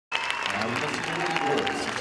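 Audience applauding, with many voices talking and calling under the clapping.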